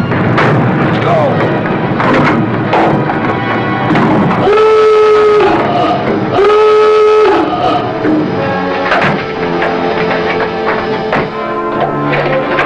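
Submarine diving alarm sounding two blasts, each about a second long, as the boat dives. The blasts come over a dramatic music score, with knocks and clatter throughout.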